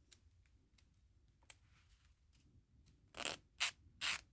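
Faint handling of a soft-gel nail tip, then near the end two strokes of a hand nail file rasping across the tip, filing its sides narrower to fit a narrow cuticle area.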